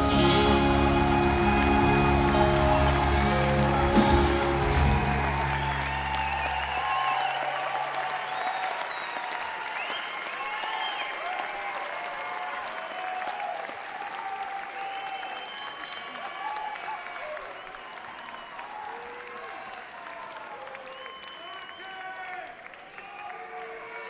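A live rock band's closing chord rings out over strong bass and stops about six or seven seconds in, under an audience applauding and cheering. The applause carries on after the music ends and slowly fades.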